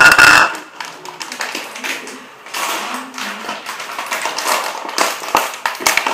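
Snack packaging being handled over a bowl: a string of crinkles and light taps, after a loud knock right at the start.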